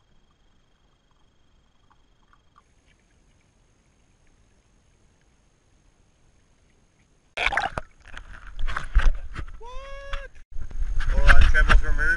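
Near silence for about seven seconds, with the camera sealed in a waterproof case underwater. Then loud noise with sharp knocks starts abruptly, with a short wavering voice-like call about ten seconds in and talking near the end.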